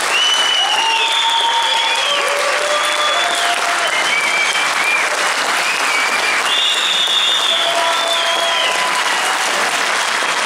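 Concert audience applauding steadily, with long held cheers and whistles ringing out over the clapping.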